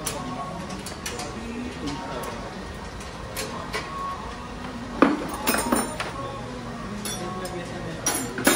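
Steel hand wrench clinking against the bolts on the flange of a jet-engine combustor part: scattered light metal clinks, with a louder flurry of clinks about five seconds in.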